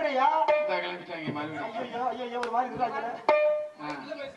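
A man's voice over a stage microphone, with a few sharp tabla strokes and harmonium accompaniment; a steady held note sounds near the end.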